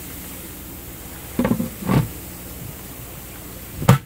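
Steady hiss of water running through the aquaponics swirl filter barrel, with two short louder sounds about a second and a half and two seconds in and a sharp click near the end.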